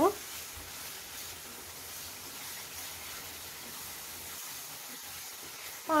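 Steady sizzle of thick tomato-onion gravy cooking in oil in a kadai as it is stirred with a wooden spatula. It is the stage where the tomato's water cooks off and the oil begins to separate out to the top.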